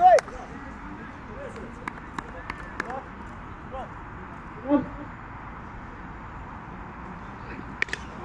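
Open-field ambience with faint distant calls from the players and a short shout about five seconds in, then a sharp knock near the end: a cricket bat striking a tennis ball.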